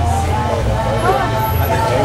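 People talking close by, with a steady low rumble underneath.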